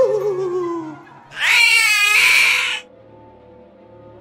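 A cartoon cat screeches loudly and high for about a second and a half in the middle. Just before, a wavering sung note with vibrato rises and then falls away.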